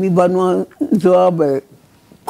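A man's voice speaking in two phrases with a short break between them, then a pause near the end; speech only.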